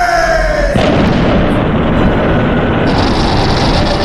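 Film sound effects: a monster's roar falling in pitch, cut off after under a second by a loud, steady explosive rush of noise that carries on to the end.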